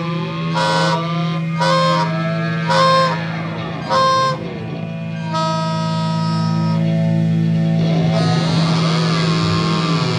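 Live experimental rock instrumental from EBow guitar, theremin, bass and tenor saxophone: a steady low drone runs under short reedy blasts about once a second, then a long held note. Pitches glide up and down around three and eight seconds in.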